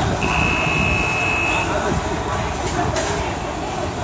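An electronic buzzer gives one steady high-pitched beep lasting about a second and a half, followed by a sharp click about three seconds in, over continuous outdoor background noise and distant voices.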